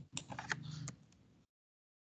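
A few keystrokes on a computer keyboard, short separate clicks in the first second or so.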